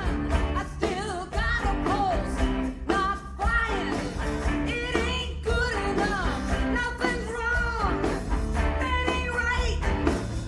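A rock band playing live, with a woman singing lead over electric guitar and a steady bass line.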